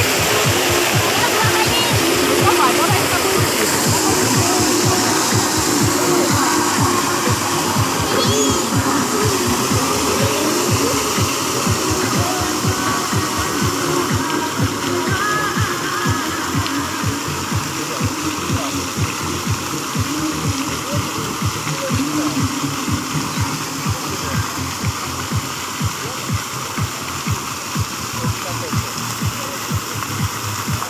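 Fountain water splashing steadily, with music that has a regular beat and indistinct voices over it.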